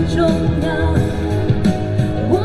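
A woman singing a Mandarin pop ballad live into a handheld microphone through a PA, over steady instrumental accompaniment.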